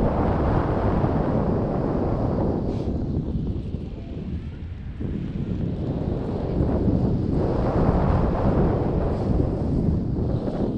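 Airflow buffeting the camera's microphone in tandem paraglider flight: a loud, low rushing rumble that eases off around four to five seconds in and builds again from about seven seconds.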